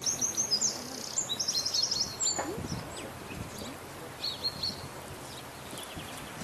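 Small birds chirping in quick high trills, mostly in the first two seconds and again briefly past the middle, over a steady outdoor background hiss.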